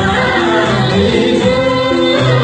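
Live performance of a Nepali salaijo song: voices singing a held melody over a band with a steady, repeating bass line.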